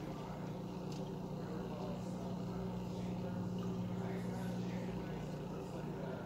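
A steady low hum, even throughout, with no change in pitch.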